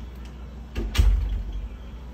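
A short click, then a heavier thump about a second in that dies away quickly, over a steady low rumble.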